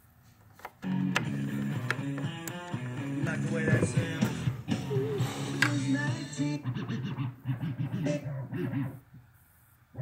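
A guitar-driven song playing from DJ software through a studio monitor speaker, heard through the room. It starts suddenly about a second in, just after the audio cable is plugged in, and cuts off about a second before the end.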